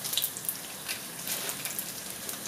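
Hot oil sizzling steadily around two ring-shaped yeast-dough beignets frying in a pan, with scattered small crackles and pops.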